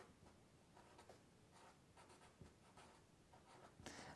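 Faint scratching of a Sharpie permanent marker writing a word on paper, in a series of short strokes.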